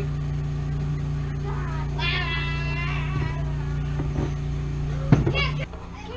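A steady low appliance hum fills the room, with a child's voice calling out briefly about two seconds in. Near the end there is a sharp knock, and the hum cuts off.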